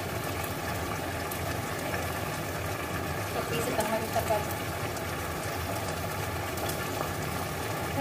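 Steady hiss of barbecue chicken simmering in a frying pan, over a low steady hum, with a faint voice briefly near the middle.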